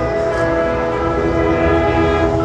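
Marching band's brass section playing long, held chords.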